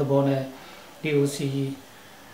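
A man speaking in two short phrases with a brief pause between them.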